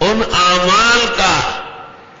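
A man's voice intoning a Quranic phrase in a drawn-out, melodic recitation style, one long phrase that fades out after about a second and a half.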